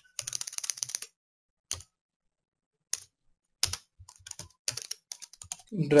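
Typing on a computer keyboard: a quick run of keystrokes, then a pause broken by a few single key presses, then more scattered typing.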